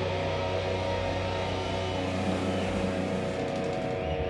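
Heavy metal band playing live: distorted electric guitar and bass holding long, ringing notes.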